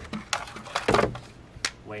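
Reacher-grabber tool poking and scraping in the dirt and stones under a shed, giving a few sharp clicks and scrapes, the loudest about a second in.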